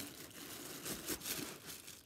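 White tissue paper crinkling and rustling in the hands as a wine glass wrapped in it is pushed back into its box, in a quick run of crackles.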